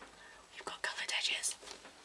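A woman speaking softly, almost in a whisper, in a few short breathy fragments.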